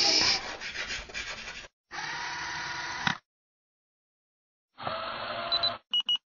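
Chalk-on-blackboard scratching sound effect in three separate bursts with silent gaps between, opening with a bright hiss. Short high electronic beeps come right at the end.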